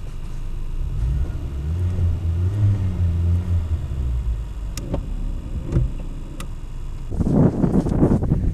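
Renault Thalia's engine revved with the gas pedal, heard from inside the cabin: the engine note rises about two seconds in and falls back again by about four seconds.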